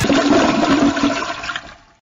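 A toilet flushing: a loud rush of water that starts abruptly and dies away over the last half second.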